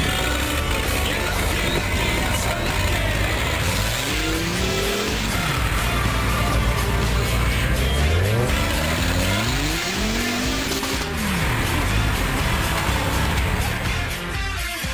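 Off-road buggy's engine revving up and down several times, in two spells about four seconds in and again from about eight seconds, as it struggles over a snowbank. Music plays under it throughout.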